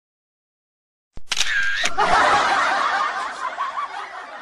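A click like a camera shutter about a second in, then about two seconds of snickering laughter that fades near the end.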